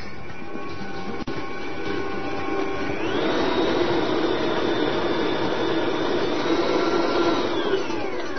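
Electric kitchen mixer running on cookie dough. About three seconds in it steps up to a higher speed, and near the end it winds back down.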